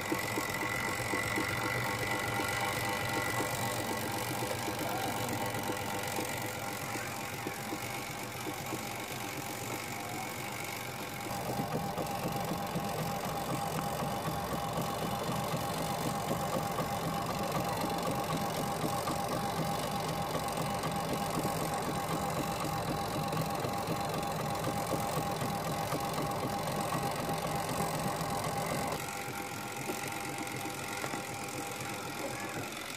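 Twin-tub washing machine running, its motor giving a steady mechanical hum that grows louder about eleven seconds in and drops back shortly before the end.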